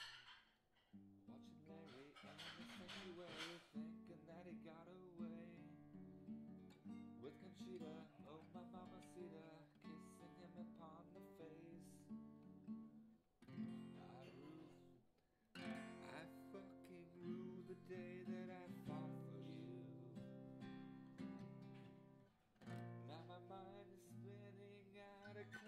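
Cutaway acoustic guitar played solo: chords strummed and picked in a steady rhythm, with two short breaks in the playing about halfway through.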